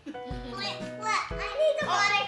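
Girls talking and exclaiming over background music with a regular bass pulse.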